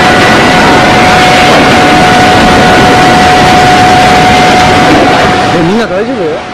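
Loud, steady rush of surging floodwater and surf pouring over buildings, with a thin steady high tone and voices underneath.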